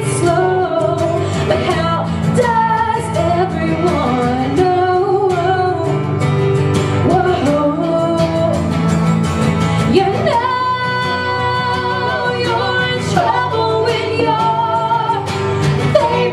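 A female lead vocal sings over strummed acoustic guitar in an acoustic pop-punk song. About ten seconds in, the melody climbs to higher, longer-held notes.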